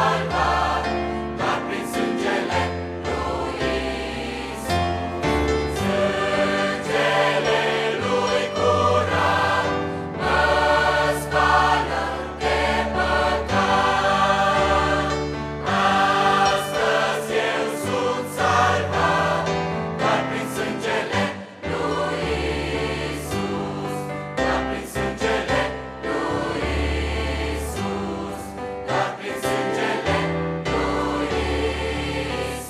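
Large mixed church choir singing a Christian hymn in harmony, accompanied by piano.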